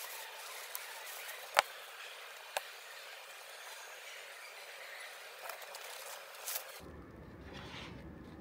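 Thin plastic food bags rustling and crinkling while a boiled egg is handled and peeled, over a steady hiss. A sharp knock about one and a half seconds in is the loudest sound, with a lighter one a second later. A low hum comes in near the end.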